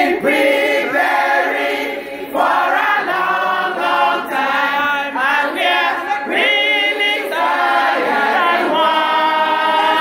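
A group of women singing together, with held notes that bend in pitch.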